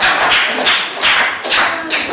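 Live audience laughing and clapping after a joke, a quick patter of claps and laughs that dies away toward the end.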